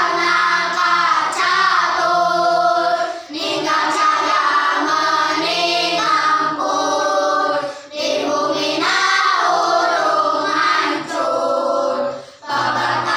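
A group of boys and girls singing together, a Sundanese nadzom for Maulid Nabi praising the Prophet Muhammad. The sung lines break for brief breath pauses about three and eight seconds in.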